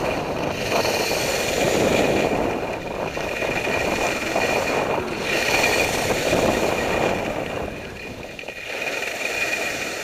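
Wind rushing over a helmet camera mixed with the hiss and scrape of edges carving through soft snow on a downhill run. The rush swells and eases every couple of seconds with the turns and drops off briefly near the end.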